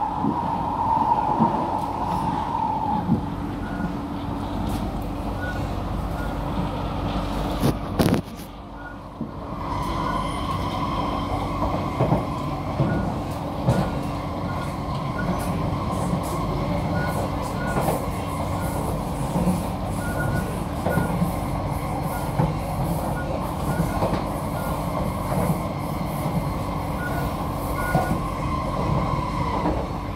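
Inside a Kawasaki–CRRC Sifang C151B metro train car running between stations: a steady rumble of wheels on rail with scattered clicks and a held whine. There is a short bang about eight seconds in, then a brief quieter spell before the whine and running noise build back up.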